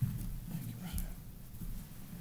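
Footsteps and shuffling on a wooden pulpit platform as two men meet and change places, with low muffled voices, and a single sharp knock about a second in.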